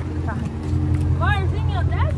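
Car engine idling, a steady low drone with a constant hum; about a second in, a high voice briefly rises and falls in pitch over it.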